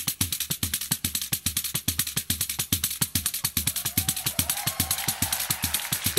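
Samba percussion playing on its own between sung verses: fast, even strikes, about ten a second. A faint pitched line joins in during the last couple of seconds.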